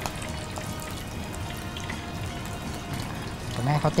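Battered shrimp deep-frying in a wok of hot oil: a steady sizzle with small scattered crackles, under faint background music.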